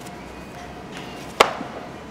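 A single sharp click about one and a half seconds in, with a brief ring after it, over a faint steady hum.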